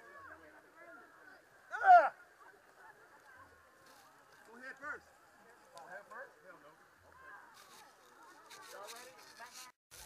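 Muffled voices of racers and onlookers, with one loud shout about two seconds in and shorter calls later. Near the end come scraping and rustling noises.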